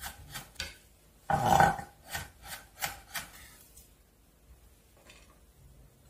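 Chef's knife mincing garlic on a wooden cutting board: quick chopping strokes, a few a second, with one longer, louder scraping stroke about a second and a half in. The chopping stops about four seconds in.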